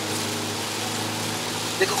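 Hyundai Veloster N's turbocharged 2.0-litre four-cylinder engine running at steady low revs, heard from inside the cabin over an even hiss of rain and wet road. A man's voice starts near the end.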